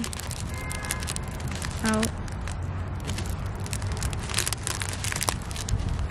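Thin plastic bag crinkling and crackling as small white foam beads are poured from it into a clear ornament ball, over a steady low wind rumble on the microphone.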